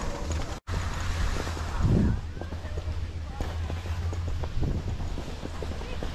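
Wind buffeting the microphone of a camera carried by a moving skier, as a steady low rumble, with skis sliding over the snow underneath. The audio drops out for an instant about half a second in.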